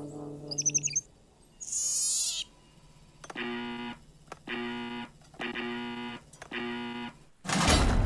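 Cartoon electronic sound effects from a computer display: a few quick chirps and a falling sweep, then four evenly spaced buzzing electronic tones as a button on the hologram screen is pressed. A loud sudden burst comes in just before the end.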